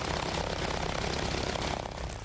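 A biplane's engine and propeller running steadily, with wind noise on the microphone.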